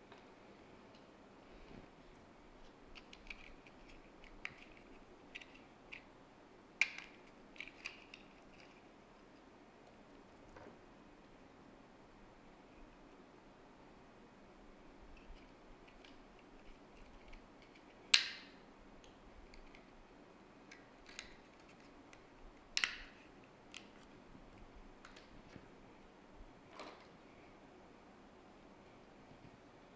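Scattered light clicks and taps of small plastic parts being handled on a workbench while an LED spotlight driver is reassembled, with two sharper snaps well apart in the middle and later part, such as its plastic end covers clipping on.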